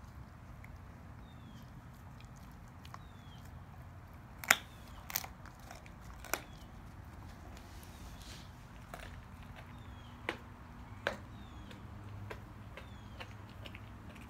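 A dog chewing a rack of raw young beef ribs, the soft rib bones crunching, with about six sharp cracks as they give way; the loudest crack comes about four and a half seconds in.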